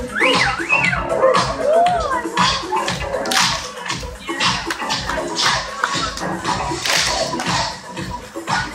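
Loud electronic dance music with a steady beat, with gliding, swooping sounds in the first two seconds, playing over a street crowd with scattered voices.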